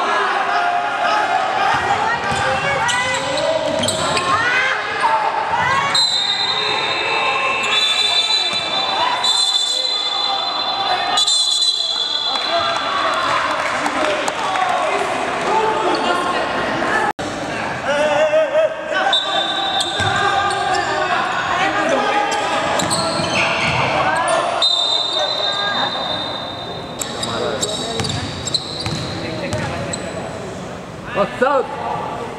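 Basketball game sounds in a gymnasium: a ball bouncing on the court and players and coaches calling out, echoing in the large hall. The sound breaks off abruptly for a moment just past the middle.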